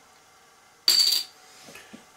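A metal twist-off bottle cap lands on a hard counter about a second in: one sharp clink with a brief high ring.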